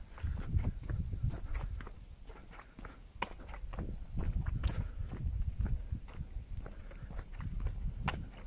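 Footsteps walking steadily along a paved path, a regular run of soft thuds and light scuffs.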